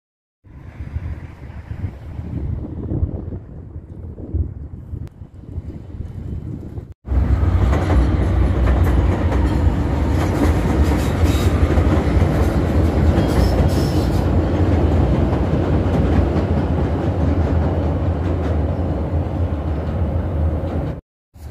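Chicago 'L' elevated train passing overhead on its steel structure: from about seven seconds in, a loud, steady rumble of the cars running along the track. Before that there is quieter, uneven street noise.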